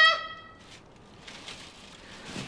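A woman's shouted word ends abruptly in the first moment, followed by quiet room tone with faint rustling.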